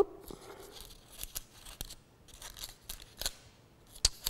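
Stiff double-sided craft paper being handled and refolded by hand on a cutting mat: faint rustling with a scattering of light, crisp ticks as the folded points slip and are pressed back.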